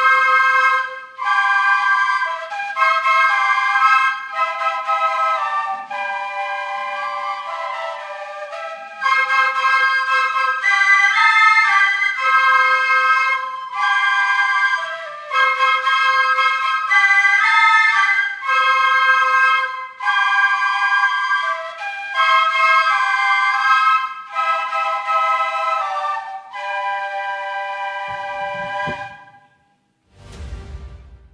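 A flute ensemble of white transverse flutes plays a piece in several-part harmony. It moves in phrases of a second or two, separated by brief breaks, and closes on a long held chord near the end.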